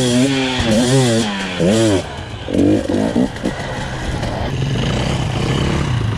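Two-stroke enduro motorcycle engine being revved in several quick throttle blips, its pitch rising and falling each time, then running more steadily near the end.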